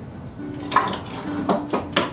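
A few sharp metallic clinks and knocks, about four in the second half, as steel tools are handled and set down on a workbench, with quiet guitar music underneath.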